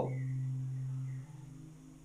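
A low, steady hum that steps up to a slightly higher pitch and turns quieter about a second in.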